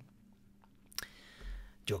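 A sharp mouth click about a second in, followed by a soft breath drawn in before the man speaks again.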